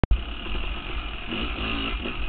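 Two-stroke dirt bike engine running as the bike rides along a trail, heard from a helmet-mounted camera. There is a sharp click at the very start.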